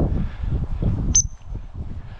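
A single short, high gundog whistle pip about a second in, a turn signal to the spaniel quartering the long grass.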